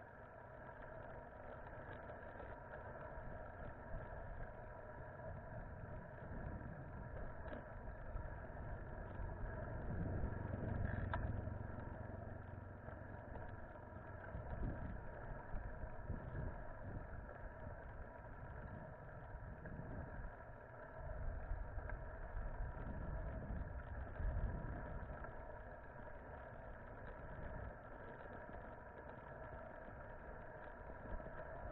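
Low, uneven wind rumble on a bicycle-mounted camera's microphone while riding, over a steady mid-pitched hum. The rumble swells about a third of the way in and again later.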